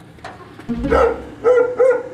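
A dog barking: a few short, loud barks in quick succession, starting about a second in.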